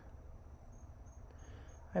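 Faint room tone: a low hum under a thin, steady high-pitched tone that breaks into short pulses for a moment about a second in.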